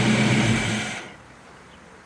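1970 Chevelle SS's 454 LS5 big-block V8 idling steadily, then shut off about a second in, the running sound dying away quickly.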